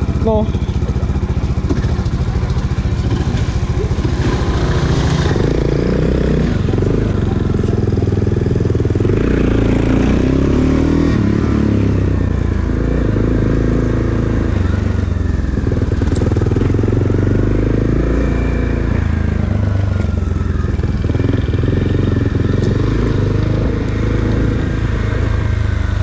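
Motorcycle engine heard from the rider's seat while riding at town speed, its note rising and falling several times as it pulls away and changes gear, with wind noise on the handlebar camera.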